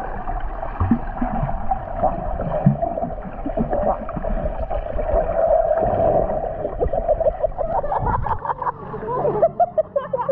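Swimmers kicking and stroking through the water, heard muffled through a submerged camera: a steady underwater hiss and rumble with bubbling and splashing. About eight and a half seconds in, the camera comes up and voices break through.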